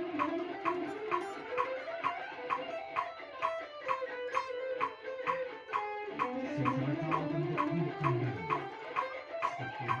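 Electric guitar picking a quick single-note exercise line. A metronome clicks steadily under it at 130 bpm, about twice a second.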